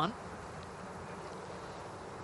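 Faint, steady outdoor background hiss with no distinct events, as a golfer stands over a putt.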